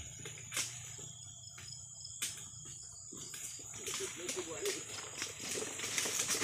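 A few sharp knocks of a harvesting chisel (dodos) chopping at the base of a low oil palm's fruit bunch, which is stuck in the fronds, over a steady chirring of insects.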